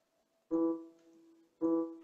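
A soft piano note from a virtual piano instrument in Cubase, sounded twice about a second apart, each dying away. It is a low-velocity note auditioned as it is clicked in the piano roll.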